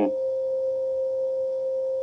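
A steady, unwavering mid-pitched electronic tone, like a test tone or whine, in a recorded phone call heard through a laptop speaker.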